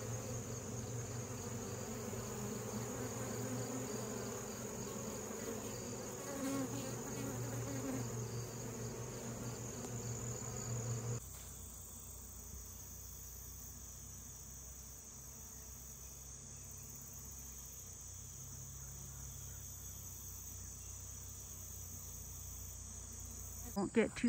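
Honey bees buzzing around a hive entrance, a wavering hum that cuts off abruptly about eleven seconds in. A steady high-pitched insect chorus carries on throughout.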